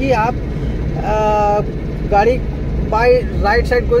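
Steady engine and road rumble heard inside a moving car's cabin, with a short, level-pitched vehicle horn beep about a second in.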